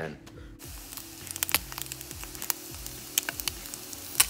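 An egg frying in a hot pan: a steady sizzle with frequent irregular crackles and pops, starting about half a second in. Quiet background music runs underneath.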